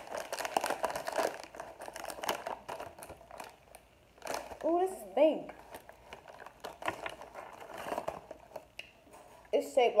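Plastic snack bag crinkling as it is opened and handled, the crackle thickest in the first second or two and again near the end. A short vocal sound about five seconds in.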